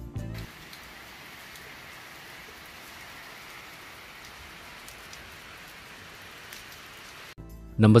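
Steady rain falling onto a shallow sheet of standing water: an even hiss of patter with scattered louder drops. It cuts off suddenly near the end.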